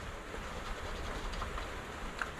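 A coin scraping the scratch-off coating of a lottery ticket: a faint, uneven rasp with small ticks.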